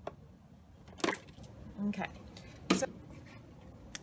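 Two short, sharp knocks, about a second in and near three seconds in, from handling a leather-hard clay vase over the potter's wheel.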